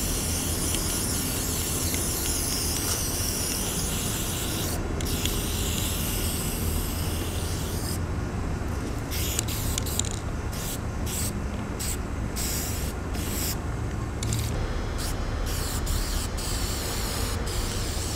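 Aerosol spray-paint can spraying graffiti paint onto a wall: long continuous hisses at first, then a run of short, quick bursts with brief gaps, then longer hisses again near the end.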